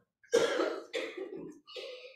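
A person coughing three times in quick succession.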